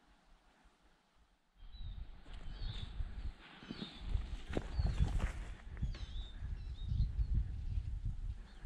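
Small birds giving short, curling chirps, with an uneven low rumble of wind or handling on the camera microphone and a few faint clicks, all starting about a second and a half in.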